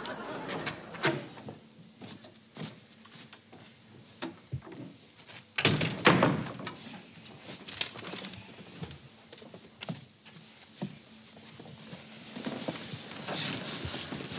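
Wooden interior door being opened and shut, its loudest knock about six seconds in, among scattered lighter clicks and rustles.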